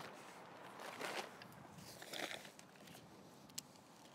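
Quiet handling of a tunnel tent: a few short rustles of the tent fabric and poles, and one sharp click a little before the end.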